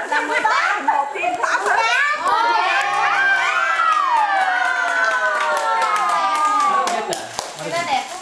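Voices of a family group: quick talk, then from about two seconds in a long drawn-out call held for about four seconds, slowly falling in pitch, before it trails off near the end.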